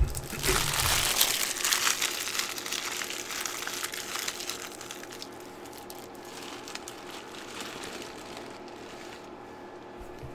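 Foil trading-card pack wrappers being crumpled and handled: a dense crinkling for the first four seconds or so that then dies down, leaving only a faint steady hum.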